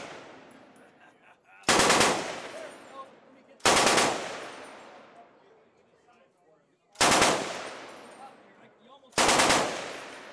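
Four short bursts of full-automatic rifle fire, each about half a second long. Each burst is followed by its report echoing away.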